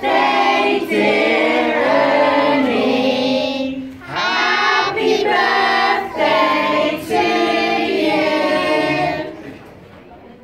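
A group of adults and children singing a birthday song together over a lit birthday cake, in phrases with short breaks for breath, the singing dying away just before the end.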